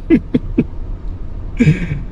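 A man laughing in a few quick chuckles at the start and again near the end, over the low steady road rumble inside a moving Bentley Bentayga's cabin.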